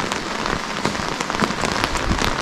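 Steady rain: a continuous hiss with many individual drops ticking irregularly close by.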